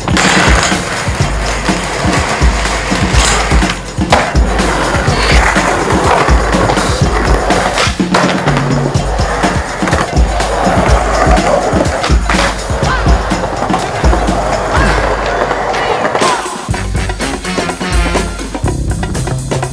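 Skateboard wheels rolling on pavement, with a few sharp knocks of tricks and landings, over music with a steady bass line. The board sound falls away near the end.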